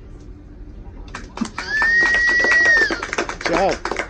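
About a second in, a small audience breaks into applause and cheering as a song ends, with one loud, steady whistle lasting about a second and a short whoop near the end.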